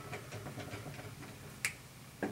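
A single sharp click from a dry-erase marker striking the whiteboard, about one and a half seconds in, with faint small ticks before it.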